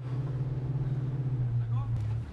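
Steady low drone of a naval patrol ship's engines under way through broken sea ice, with a brief faint gliding tone near the end.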